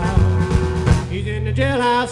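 Live country band playing, with acoustic and electric guitars over a drum kit.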